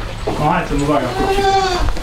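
Young goats bleating, with one long bleat through most of the second half.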